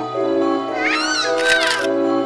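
Light background music with steady held notes. About three-quarters of a second in, a short high squeal rises and falls in pitch and ends in a brief hiss.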